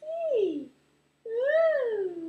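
A baby of under three months cooing: two drawn-out vocal sounds, the first sliding down in pitch, the second rising and then falling.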